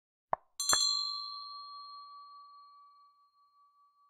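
Subscribe-button animation sound effect: a short sharp mouse click, then a bright notification-bell ding that rings on and slowly fades over about three seconds.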